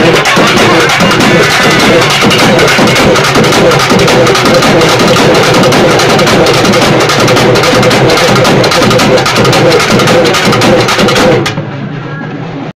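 Urumi melam drum ensemble playing a fast, dense rhythm on stick-beaten barrel drums; the drumming stops abruptly near the end.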